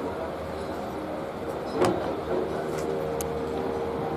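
A handbag's contents being rummaged through, with one sharp click about two seconds in, over steady background hiss and a faint hum.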